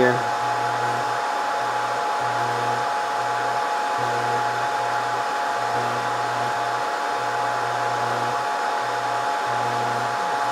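Scotle IR360 rework station's lower hot-air heater blowing steadily during the reflow stage, a constant rush of air with a couple of steady tones in it. Under it, a low hum cuts in and out every second or so.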